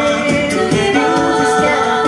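Vocal group singing a cappella into microphones: several voices holding chords in harmony, over a steady vocal-percussion beat.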